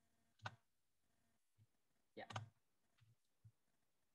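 Near silence broken by a few faint computer clicks: one about half a second in, a quick cluster a little past the middle, and two softer ones near the end.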